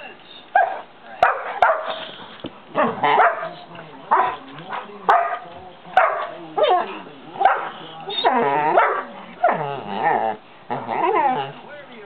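A 5½-month-old St. Bernard puppy barking over and over at a cat to get it to play, about one bark a second, some calls bending up and down in pitch.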